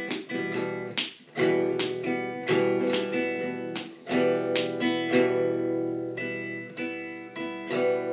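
Acoustic guitar strummed in a steady down-and-up pattern, with upstrokes in it, the chords ringing on between strokes. There are brief breaks about a second in and again near four seconds.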